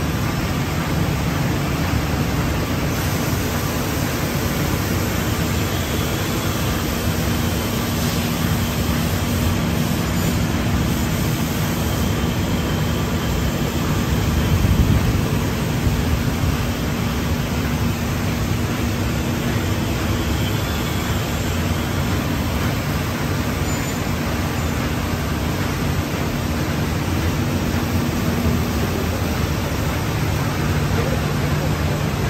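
Steady rushing hum of running industrial machinery, with a faint steady low tone and a slight swell about halfway through. There are no distinct cutting strokes or impacts.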